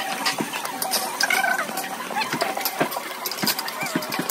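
Busy barbecue-restaurant ambience: background chatter with frequent short clicks and clinks from the tables.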